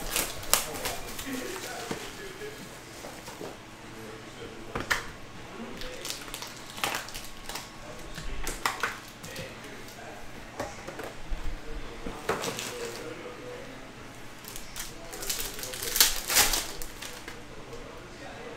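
Hands handling a trading-card hobby box and its foil-wrapped card packs: scattered crinkles and rustles, with a denser run of crinkling near the end as a pack is torn open.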